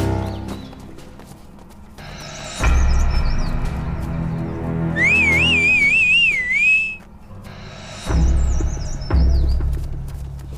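Tense background music with heavy low drum hits, over which short bird-like chirps sound. About five seconds in comes a loud, warbling, bird-like whistle lasting about two seconds, wavering up and down in pitch.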